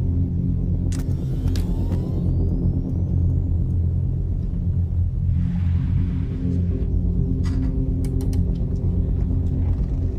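Low, sustained droning film score. A few sharp clicks sound over it, a faint rising electronic whine comes in about a second in, and a brief hiss falls near the middle.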